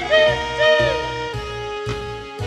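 Swing-style band music: a bass line stepping from note to note under a lead melody that bends and glides between notes.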